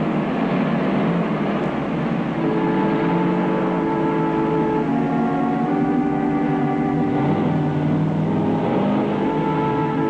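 A truck engine running as the truck drives along the road, under background music held in long chords that change every few seconds.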